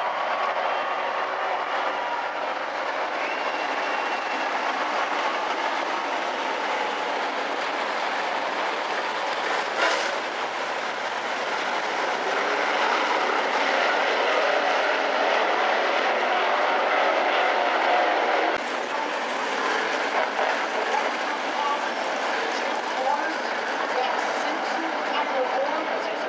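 A field of dirt-track modified race cars with V8 engines running together as a pack, a loud steady engine drone. There is one sharp bang about ten seconds in.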